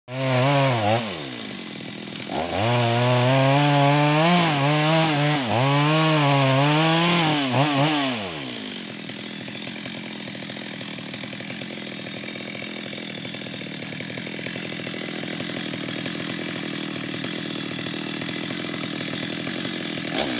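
Two-stroke chainsaw cutting into a large mahogany trunk, its engine pitch dipping and recovering under load. After about eight seconds it drops to a steady idle.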